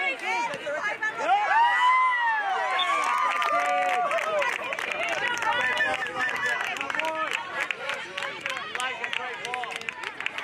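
Overlapping shouts and calls from spectators and players at a youth soccer game, including one long rising-and-falling shout about two seconds in. A patter of short clicks runs through the second half.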